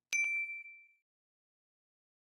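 Bell-notification sound effect from a subscribe-button animation: a click and a single bright ding just after the start, ringing one clear tone that fades out within about a second.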